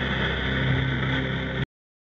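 Sony radio tuned to 103.9 MHz, giving a weak long-distance FM signal from Radius FM in Belarus, received by sporadic-E propagation: steady static hiss with faint station audio underneath. It cuts off suddenly about one and a half seconds in.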